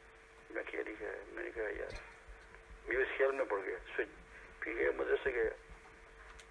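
Speech only: a man speaking in three short phrases with pauses between them. A faint steady hum can be heard in the pauses.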